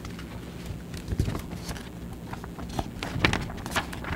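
Papers being handled and signed at a table close to the microphones: a handful of irregular light knocks and rustles over a low steady hum.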